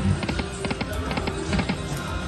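Video slot machine spinning its reels: a quick series of clicks and short chiming tones as the reels run and stop one after another, over the machine's music.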